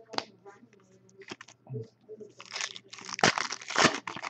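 Foil trading-card pack being handled and torn open: scattered crinkles and clicks at first, then a dense run of crinkling and tearing through the second half.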